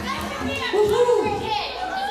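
Several people talking and calling out over one another after the music has stopped, one voice rising and falling in pitch about a second in.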